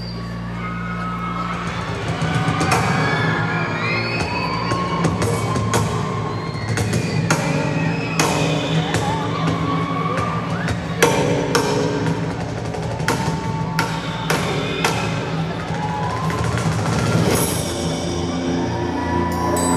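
Live band music in an arena: a steady low synth drone under scattered sharp percussion hits, with screams from the crowd rising and falling over it.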